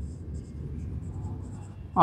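Dry-erase marker writing on a whiteboard: a run of short, faint strokes.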